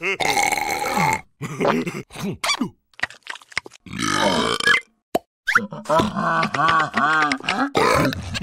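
Cartoon larva characters making wordless vocal noises: grunts, squeaky gibberish and short comic sound-effect clicks, then, from about halfway through, a run of rhythmic laughter, roughly four pulses a second.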